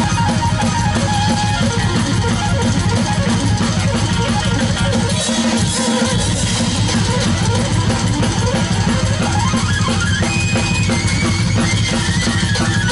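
Drum kit played hard with frequent cymbal crashes, over a loud distorted electric-guitar backing track. The bass drops out briefly just before six seconds in.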